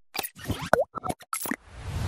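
Logo-animation sound effects: a quick run of short pops and plops, one with a bending, boing-like tone, then a swelling whoosh starting near the end.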